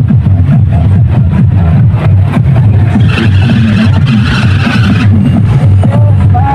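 Loud electronic dance music with heavy, pulsing bass, played through a large street sound system of stacked speaker cabinets. A brighter, higher layer comes in for about two seconds in the middle.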